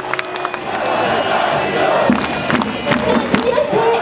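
Football stadium crowd cheering and calling out, growing louder about a second in, with voices close by.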